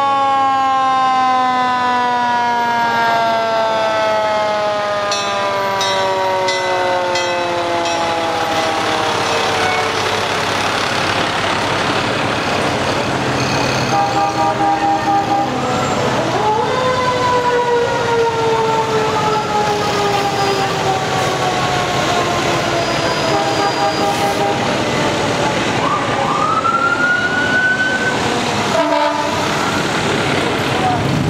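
Fire engine sirens wailing: a long siren tone that slowly falls in pitch, then winds up quickly and falls again about halfway through, and rises once more near the end. Short horn blasts sound a couple of times in between.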